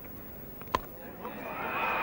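A cricket bat striking the ball once, a single sharp crack about three-quarters of a second in, followed by crowd noise swelling as the ball is hit in the air.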